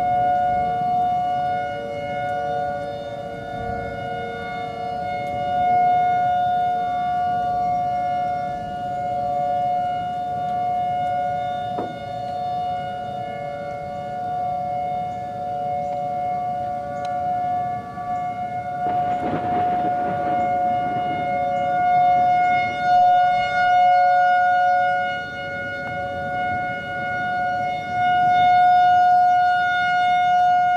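Outdoor warning siren sounding a steady chord of tones that holds its pitch while its loudness slowly swells and fades. A brief rush of noise breaks in a little past the middle.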